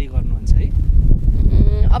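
Wind buffeting the microphone in a steady low rumble. A held, drawn-out voice-like call comes in during the last half second.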